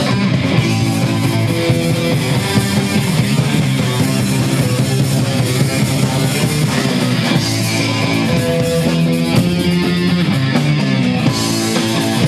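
A punk band playing live: electric guitar, bass and drums in a loud, steady instrumental passage without vocals.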